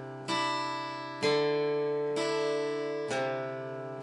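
Acoustic guitar chords strummed four times, about once a second, each chord left to ring and fade before the next.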